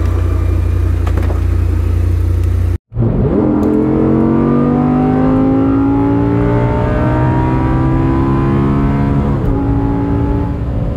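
Audi R8 engine. For the first few seconds it runs with a steady low rumble. After a sudden break it pulls hard at full acceleration, its pitch rising steadily through third gear, and drops with an upshift to fourth near the end.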